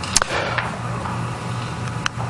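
Steady low hum and light hiss of a room or sound system between spoken phrases, with one short click just after the start.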